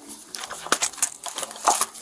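Handcuffs being put on a man's wrists close to a body-worn camera: a run of sharp metallic clicks and rattles over the rustle of clothing against the microphone.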